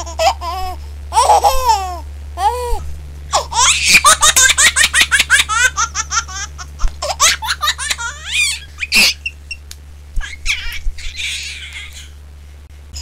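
High-pitched, childlike laughter in repeated bursts, thickest from about four to nine seconds in and fading near the end, over a steady low hum.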